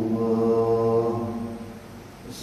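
A man's voice chanting in Arabic, holding one long steady note that fades away near the end.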